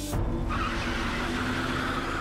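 A car peeling out with its tyres screeching, a high squeal that starts about half a second in and holds, over sustained background music.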